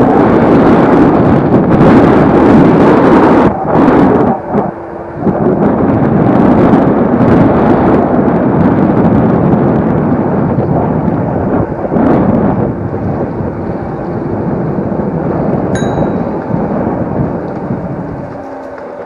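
Wind rushing over the microphone and road rumble from a moving e-scooter, easing briefly about four seconds in. A single short bell ding sounds near the end.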